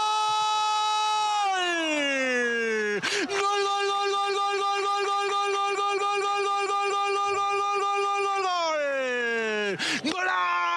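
A male TV football commentator's drawn-out goal call: two long shouts, each held at one high pitch and then sliding down at the end. The first ends about three seconds in; the second lasts about six seconds.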